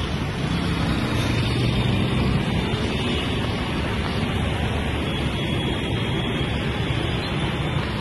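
Steady road traffic noise: a continuous rumble from passing vehicles, with no distinct horn or single passing vehicle standing out.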